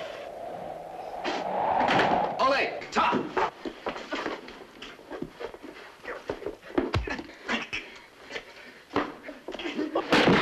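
A scuffle on a floor: a quick, irregular run of thumps, knocks and slams as two men grapple, with grunts and shouts among them and a deep thud about seven seconds in.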